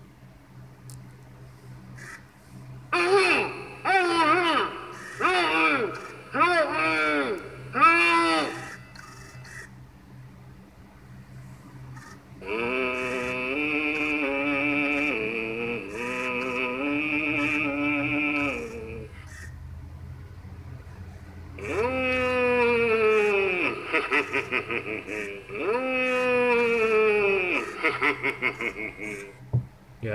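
Gemmy animated Butler head candy dish playing its recorded character voice through its small speaker. First comes a string of short, chuckling syllables, then a long, drawn-out stretch of voice, then long moans falling in pitch, with a low steady hum underneath.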